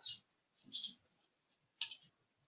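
Three brief, hissy fragments of a woman's speech, separated by silence.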